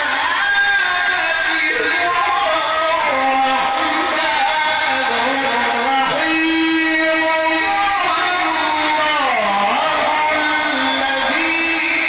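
A man reciting the Qur'an in the melodic mujawwad style into a microphone, one continuous ornamented line of long held notes that bend and slide, with a long steady note in the middle and a falling glide near the end.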